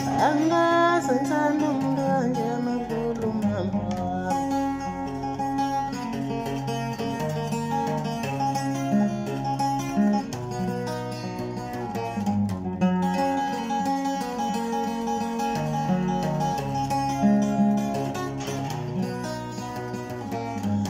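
Acoustic guitar, capoed, played in steady sustained chords, with a man singing along, his voice clearest at the start.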